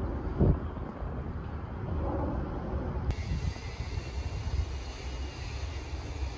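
Outdoor ambience: a steady low rumble of distant engine noise, with a faint hiss above it.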